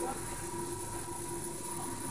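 Steady low hum of laboratory equipment running, with a faint steady tone over it.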